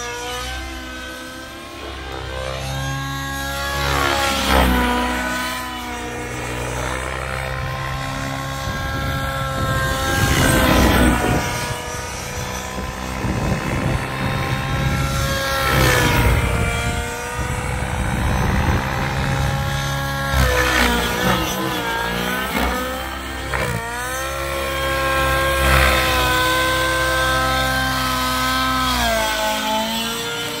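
Goblin Raw 700 Nitro RC helicopter flying aerobatics: its nitro glow engine and rotor run continuously, the pitch rising and falling with the manoeuvres. About five louder rushing swells come as the helicopter swoops close past.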